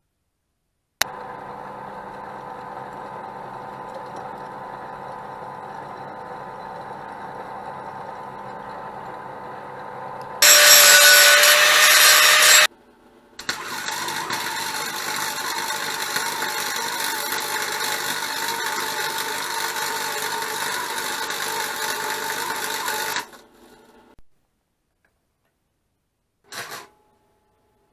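Electric arc welding on steel, a steady crackling hiss lasting about ten seconds in the second half. Before it there is a steadier machine noise with a hum, and a much louder hiss of about two seconds that cuts off suddenly.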